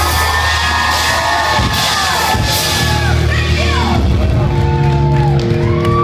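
Live rock band holding sustained chords, with the crowd cheering and whooping over them.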